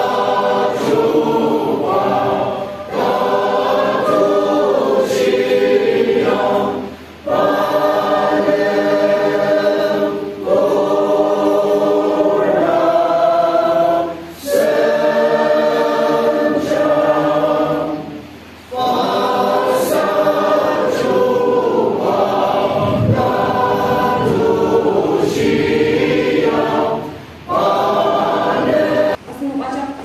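Congregation of mixed men's and women's voices singing a hymn together, in phrases of a few seconds broken by short pauses for breath.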